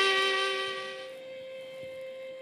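A blown conch shell (shankha) holds one long, breathy note that fades away over the first second. It leaves a quieter held tone of background music.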